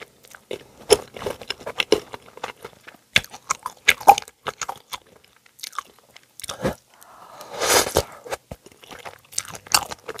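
Close-miked eating of cheesy instant ramen noodles: wet chewing and mouth smacks in quick irregular clicks, with a longer slurp of noodles about eight seconds in.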